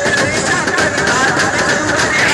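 Loud procession music: drumming with a wavering melody over the noise of a dancing crowd.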